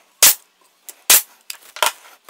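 Pneumatic nail gun on an air hose firing into wood: two sharp shots about a second apart, then a third sharp strike near the end.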